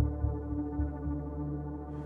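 Ambient synthesizer background music: a sustained low drone of steady held tones, with soft low pulses now and then.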